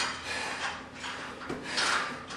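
Cable machine's steel cables and pulleys rubbing and sliding in a few rough strokes as the handles are pulled.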